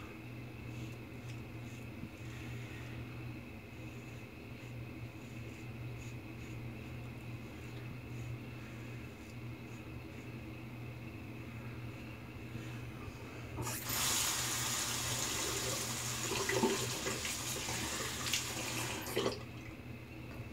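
Faint scraping of a safety razor, the Fine Accoutrements World's Finest Razor, cutting lathered stubble. About fourteen seconds in, a sink tap runs for about five seconds and then shuts off sharply; this is the loudest sound.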